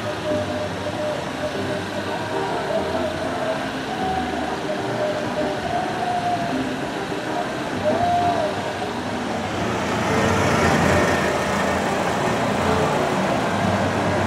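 Town street ambience: traffic noise with faint voices, then a vehicle passing close and the traffic growing louder from about ten seconds in.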